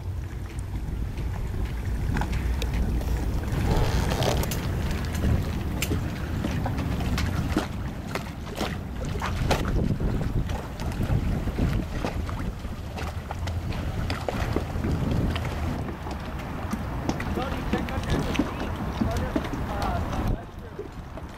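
Low, steady rumble of a boat's Volvo Penta 5.7 V8 inboard engine under way, with wind buffeting the microphone throughout.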